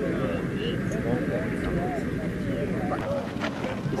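Several voices talking indistinctly and overlapping over a steady low rumble, with a few short clicks near the end.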